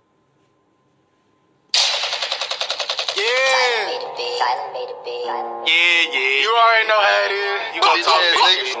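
Near silence, then about two seconds in a rap music video's intro starts abruptly: a rapid burst of machine-gun-fire sound effect, about ten shots a second, followed by a voice over music with sweeping pitch and held chords.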